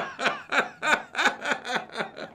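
Laughter in a run of short bursts, about four or five a second, each falling in pitch.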